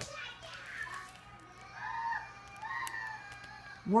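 Children's high-pitched voices in the background of a home, with two short stretches of talking or calling about two and three seconds in.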